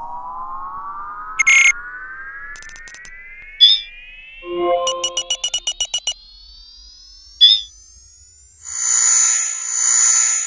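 Synthesized computer-interface sound effects: a slow electronic tone rising in pitch throughout, with short runs of rapid high clicking beeps about three and five seconds in and scattered blips. From about nine seconds in, a louder noisy electronic buzz sounds, over the on-screen handprint scan.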